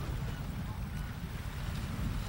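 Wind buffeting an outdoor camcorder microphone: an uneven low rumble with a steady hiss over it.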